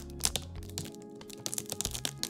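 Clear plastic bag crinkling and crackling as it is pulled and peeled off a case part, in many short sharp crackles. Background music with held notes plays underneath.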